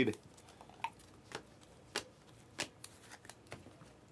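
A stack of shiny foil-finish basketball trading cards being thumbed through by hand, each card sliding off the stack with a faint snap, about two a second at an uneven pace.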